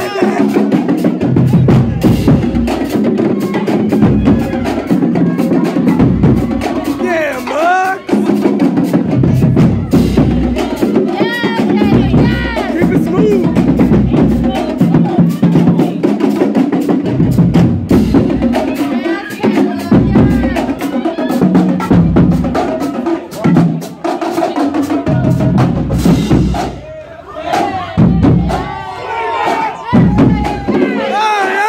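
Marching band drumline playing a fast cadence, with bass drums and snare drums hitting hard and continuously. People shout and cheer over the drums.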